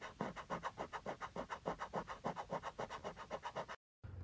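Rapid, rhythmic scratching, about six or seven strokes a second, as the sound effect of an intro animation. It cuts off suddenly near the end.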